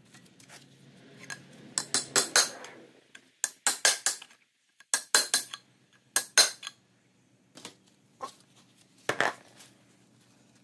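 Metal paint can being handled and set down, giving a series of short metallic clinks and knocks in several quick groups.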